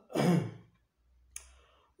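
A man's breathy sigh lasting about half a second, followed by a single small click, like a mouth click, near the middle of the pause.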